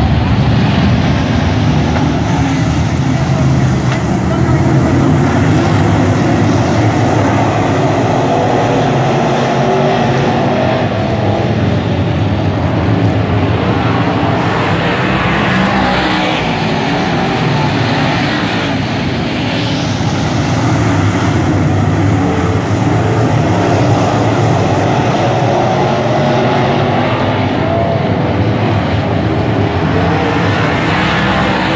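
A field of dirt-track race cars running hard around the oval, their engines making a loud, continuous noise. It swells twice in the middle as cars pass close by.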